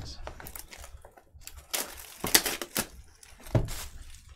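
Plastic shrink wrap being torn and crinkled off a sealed trading-card hobby box: a run of crackles and sharp crinkles, loudest about two seconds in and again near the end.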